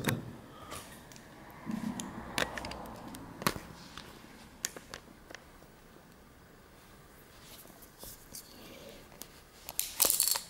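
Handling noise: scattered faint clicks and knocks as a camera is set down on carpet and a CZ 122 .22 pistol is picked up, with small metal clicks near the end and a louder clack right at the end as hands start working the pistol's slide.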